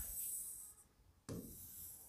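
Stylus drawing lines on an interactive whiteboard screen: a faint stroke along the panel that stops about 0.8 s in, then a second stroke that starts with a light tap about 1.3 s in.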